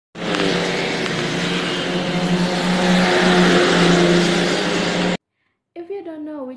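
Road traffic: a car's engine and tyres passing close by. The sound grows to its loudest about three to four seconds in, then cuts off suddenly.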